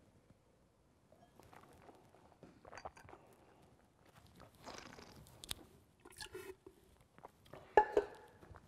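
A man sipping red wine and working it around his mouth to taste it: a scattered run of soft, short mouth noises. A slightly louder one comes near the end.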